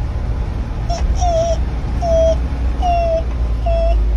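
Bus engine and cabin rumbling steadily while driving, with four short, high squeals that fall slightly in pitch, about a second apart.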